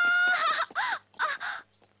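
Crows cawing: one drawn-out caw, then several short, harsh caws that stop about a second and a half in, followed by faint, regular clicks.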